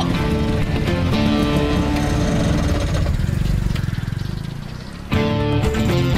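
Film background music that dies down over a couple of seconds, then a new, louder track with guitar cuts in suddenly about five seconds in.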